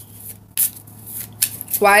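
A deck of tarot cards being shuffled overhand in the hands: a few short, soft swishes of cards sliding over one another.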